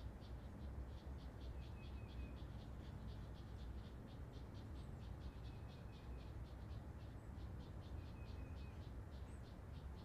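Faint chorus of small calling animals: an even train of short high clicks, about five a second, with a short run of pips three times, over a low steady rumble.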